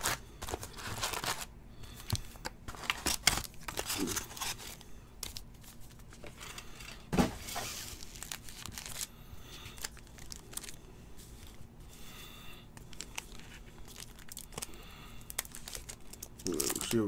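Foil trading-card packs crinkling and rustling as they are lifted out of the box and stacked by hand, with irregular crackles, and a pack wrapper being torn open.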